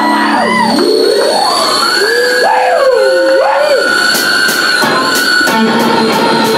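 Amplified electric guitar in a live metal band making swooping squeals that slide up and down in pitch. From about four seconds in, regular high ticks come in at about three a second.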